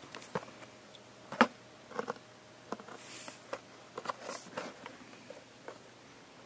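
Plastic blister pack and card of a carded diecast model car being handled: scattered clicks and crinkles, the sharpest about a second and a half in.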